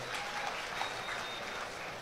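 Large audience applauding, faint and steady, heard through the speaker's microphone.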